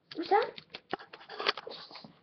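A short spoken phrase, then a run of light clicks and taps from plastic Littlest Pet Shop figurines and playset pieces being moved by hand.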